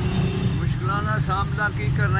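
An elderly man's voice speaking over a steady low background rumble; the voice comes in just under a second in.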